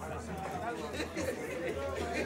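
Several people talking at once, overlapping voices, over a steady low hum.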